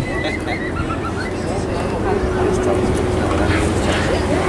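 Gusty wind rumbling on the microphone, with the steady hum of an approaching airliner's jet engines that grows a little louder about halfway through. Short high chirps sound above it.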